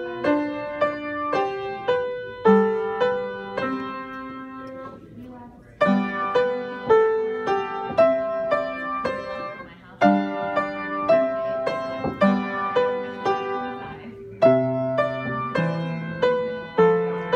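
Solo piano playing a classical piece, note by note, with short breaks between phrases about five and ten seconds in.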